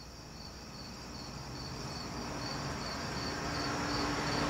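High-pitched insect chirping in an even rhythm, about two to three chirps a second, over a rush of noise that swells steadily louder, with a faint low hum joining about a second in.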